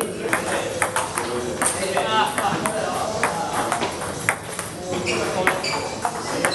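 Table tennis rally: the ball clicking off paddles and the table in quick, irregular hits, with voices in the hall.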